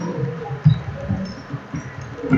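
Typing on a computer keyboard: a run of irregular, dull low thumps from the keys, with a few sharper taps.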